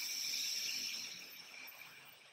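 A slow inhale through one nostril during alternate-nostril breathing (nadi shodhana): a soft airy hiss, loudest at first and tapering off.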